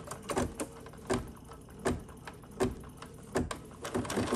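Embroidery machine clicking at a slow, even pace, about one click every three-quarters of a second.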